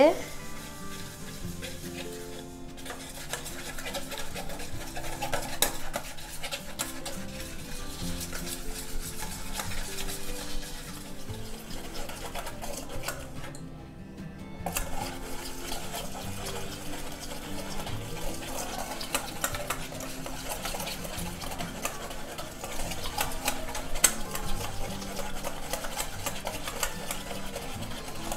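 A wire hand whisk beats thick pancake batter in a stainless steel bowl, a steady wet stirring with frequent light clicks of the wires against the metal. It pauses briefly about halfway, then carries on.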